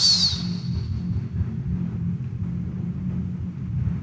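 Steady low drone, a sustained background tone with no clear beat or changing notes.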